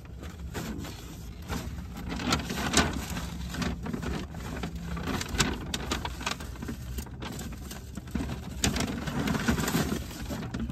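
Paper takeout bag rustling and crinkling, with plastic food containers being pulled out and handled in quick, irregular crackles and clicks, over a low steady hum inside the car.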